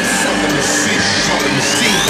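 Electronic dance music: held synth tones with a rising sweep over the second half and little bass.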